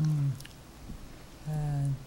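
A woman's hesitation fillers: a short falling 'uh' at the start and a held 'uhh' near the end, with a pause between.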